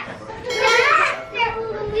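Indistinct chatter of adults and children in a room, with faint music underneath and a laugh at the very end.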